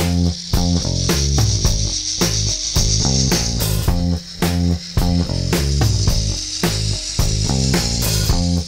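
Background music: a band track with a steady drum beat, a stepping bass line and a constant high hiss of cymbals.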